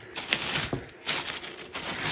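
Clear plastic wrapping around an electric blanket crinkling and rustling as it is handled against its cardboard box, with small clicks, in two short bouts: one at the start and one from about a second in.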